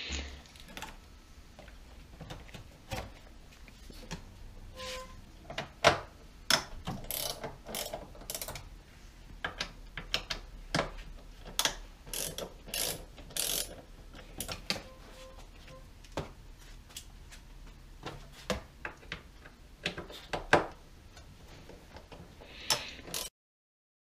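Hand socket ratchet clicking in short runs as the cowl bolts are turned out, mixed with scattered knocks and clicks of tools against the car's plastic trim.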